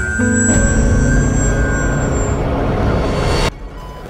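Spaceship departure sound effect: a deep rumble with steady high tones, mixed with dramatic music, that cuts off suddenly about three and a half seconds in.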